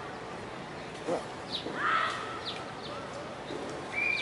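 Outdoor background hiss with a few short, high chirps from small birds in the middle, and a brief distant call or voice around the same time.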